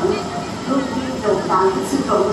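Speech only: a woman talking in Thai, played over loudspeakers from a screened video.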